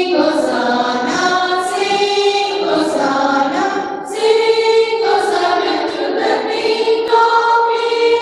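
A choir of women singing a song together, holding one long note through the second half.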